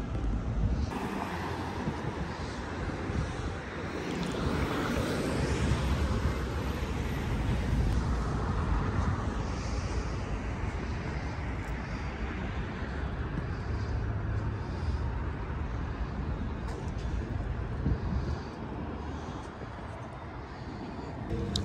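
City street ambience: a steady rush of traffic with wind buffeting the microphone.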